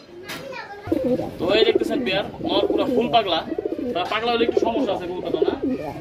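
Domestic pigeons cooing, a warbling run of coos that starts about a second in and carries on.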